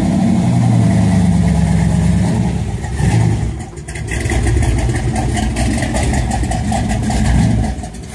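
Chevrolet 409 big-block V8 running as the car pulls away and drives off. The engine note dips briefly about three and a half seconds in, then picks up again.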